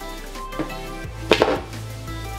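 Two or three quick spritzes of a hand-held spray bottle in rapid succession, over background music with a steady beat.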